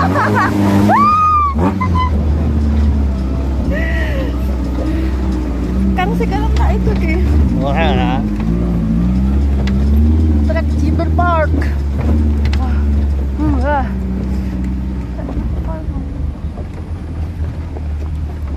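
Off-road jeep's engine running at low revs as it drives over a rough, rocky dirt track, its pitch wavering a little with the throttle. Short voice calls come through now and then over the engine.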